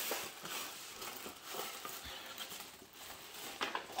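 Gift-bag tissue paper and plastic wrapping rustling and crinkling irregularly as a wrapped present is pulled out of the bag.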